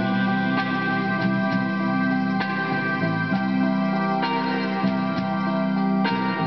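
Karaoke backing track playing an instrumental passage of sustained, organ-like keyboard chords, with no singing.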